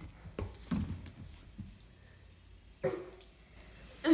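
Soft thumps and rustling of a person shifting about on a rug in a sweater, with one brief vocal sound about three seconds in.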